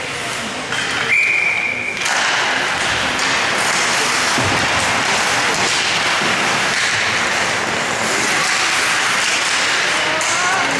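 An ice hockey referee's whistle blows about a second in, one steady shrill note held for about a second. It is followed by a steady din of rink and crowd noise with voices.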